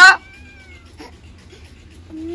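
A young boy crying: a loud wailing cry cuts off just after the start, followed by one faint, falling whimper and then quiet.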